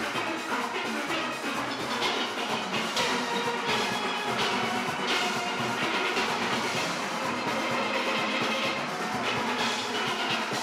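A large steel orchestra playing live: steelpans of many ranges, from small tenor pans to bass barrels, struck together in one full, continuous passage.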